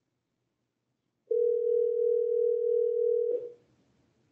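A telephone ringback tone: one steady ring of about two seconds, heard over the conference audio as an outgoing phone call rings without being answered.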